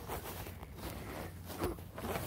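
Soft, irregular rustling and scraping of dry grass and fur against a phone held right at the microphone, with handling noise.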